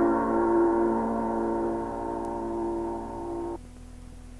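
A held keyboard chord in Ethiopian piano music, slowly dying away, then cut off suddenly about three and a half seconds in: the end of a track. A faint low hum is left after it.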